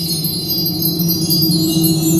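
Indoor percussion ensemble of mallet keyboards playing a sustained, ringing passage: held low chord tones with a high shimmer of chime-like ringing above them.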